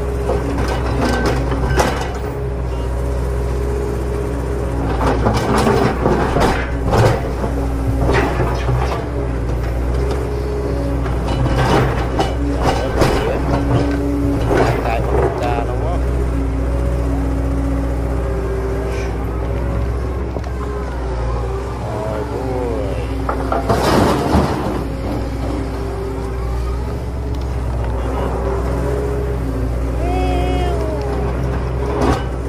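Plastic toy trucks and a toy excavator being knocked together and scraped through sand by hand, a run of short knocks and rustles over a steady low hum and held tones that come and go.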